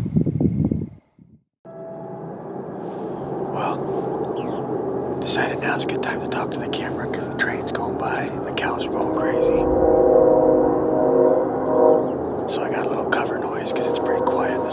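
After a brief silence about a second in, a bed of sustained, droning musical tones sets in and holds, growing somewhat louder near the middle, with a man whispering over it at intervals.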